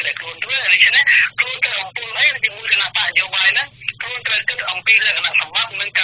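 Speech only: continuous Khmer talk from a radio news broadcast, sounding thin and narrow like telephone audio.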